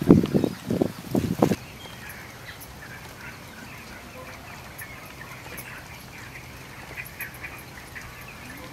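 A quick run of loud, short fowl calls in the first second and a half, then faint bird chirps over a low steady hum.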